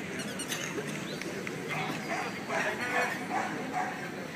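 A dog barking in a run of short barks, about two a second, through the second half, over a steady background of crowd chatter.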